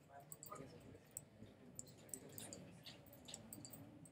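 Near silence: faint room tone with scattered small clicks and a faint, indistinct murmur.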